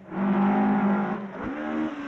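Ford Escort rally car's engine at high revs: a steady, loud note for about a second, a brief break a little past halfway, then the pitch climbing again.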